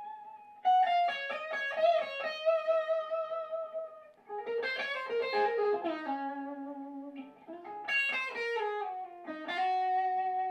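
Electric guitar solo played through an amp in a shower and picked up by an ambisonic room microphone. A single-note lead line of long, sustained notes with bends and slides, carrying the big reflective sound of a bathroom.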